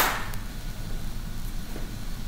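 Quiet room tone with a steady low hum and faint hiss, opened by a single sharp click.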